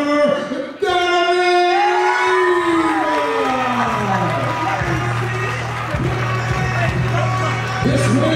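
A ring announcer's amplified voice draws out one long call that slowly falls in pitch, typical of announcing the winner's name. A crowd then cheers over music.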